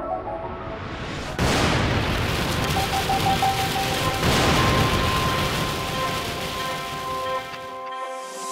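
Heavy rain falling, a rainstorm sound that comes in suddenly about a second and a half in and eases off near the end, laid over soft background music with held tones.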